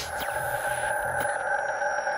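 Electronic logo-sting sound design: a steady synthesized drone of held tones, with faint high gliding tones and a couple of soft ticks.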